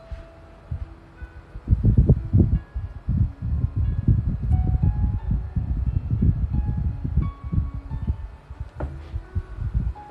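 Soft background music of scattered, chime-like single notes. From about two to nine seconds in it is joined by a louder run of low, irregular rumbling knocks.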